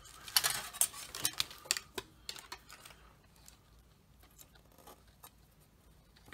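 Light clicks and rustles of an LED circuit board and its wiring being handled, quick and many in the first two seconds, then sparse and faint.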